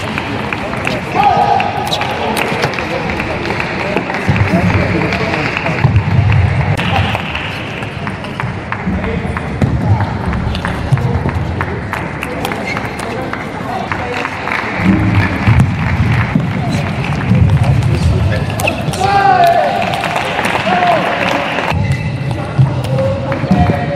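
Table tennis ball clicking off the bats and the table in rallies, over constant arena crowd noise with chatter and a few shouts.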